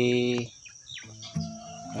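Steady high-pitched chirring of insects, with a man's drawn-out hesitation sound over it at the start and a quieter held voice sound near the end.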